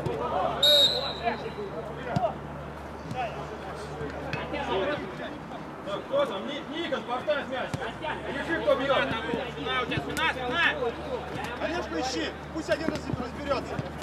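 Football players shouting to each other across the pitch, with a short, high whistle blast about a second in and occasional thuds of the ball being kicked.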